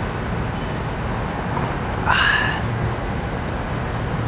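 Steady low rumble of traffic from a nearby main street, with a brief high squeak about two seconds in.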